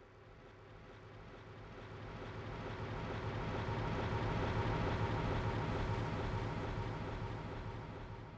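A quiet, low rumbling drone with faint steady tones in it, swelling up from near silence over the first few seconds and then slowly easing: an ambient intro sound effect.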